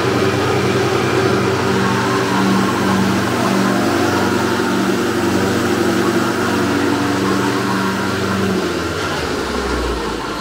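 Wood-Mizer MP260 planer/moulder running with no board in it: its motors and cutterheads spin with a steady hum. Near the end the hum drops away and the machine starts to wind down.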